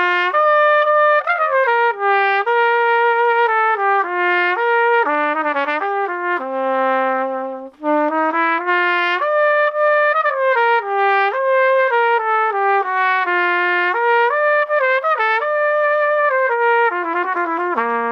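ACB Doubler's dual-trigger large-bore cornet played solo: a flowing melodic passage of many notes, including one longer low held note, with a single short breath a little past the middle. It is played with a trumpet-style 1.5 CB mouthpiece, which makes its tone a little brighter.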